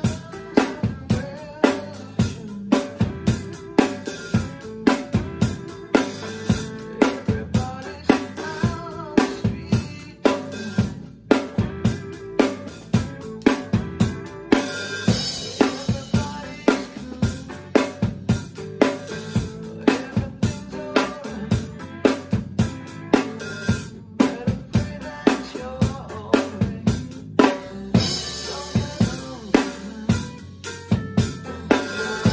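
An acoustic drum kit played in a steady rock groove: kick and snare with about two strong hits a second, under the cymbals. The cymbal wash gets brighter about halfway through and again near the end.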